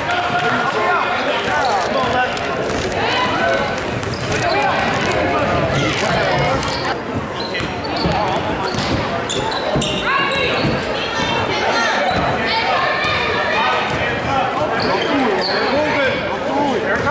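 Live girls' basketball game in a gym: a basketball dribbled on the hardwood floor with repeated knocks, sneakers squeaking, and players and spectators calling out, all echoing in the hall.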